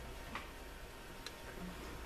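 Quiet room tone with a steady low hum and two faint ticks, about a third of a second in and just after a second in.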